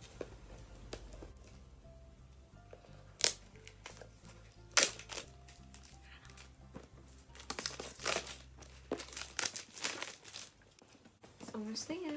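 Cardboard phone box and its plastic wrap being handled and pulled open: crinkling and tearing, with two sharp clicks a few seconds in and a run of rustling near the end.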